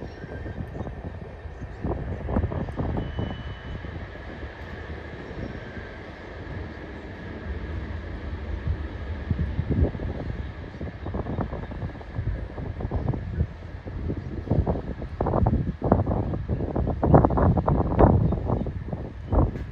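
A Union Pacific local freight train's tank cars rolling slowly along the track: a steady low rumble with irregular knocks and clanks that come more often toward the end.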